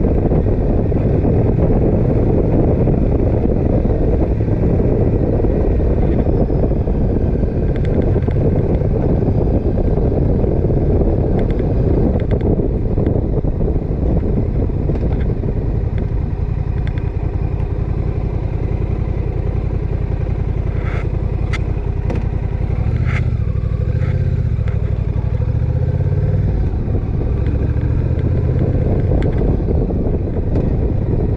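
Motorcycle engine running while the bike is ridden along at road speed. Its pitch rises and falls a little past the two-thirds mark, and a few brief clicks sound just before that.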